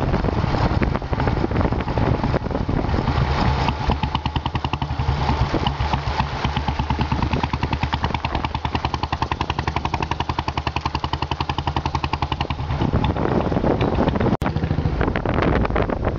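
Royal Enfield single-cylinder motorcycle engine running under way, its exhaust beat a steady, rapid even pulse over road and wind noise. The sound cuts out for an instant near the end.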